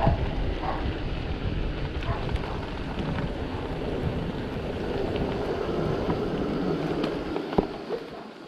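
Wind buffeting the microphone of a camera on a moving mountain bike, over the rush of its tyres on asphalt. The noise eases off near the end as the bike slows, with one sharp click just before.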